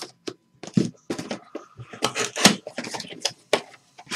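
Sealed Upper Deck Exquisite Collection card box being cut open with a blade and pulled apart: a run of irregular scrapes and crinkles of shrink wrap and cardboard.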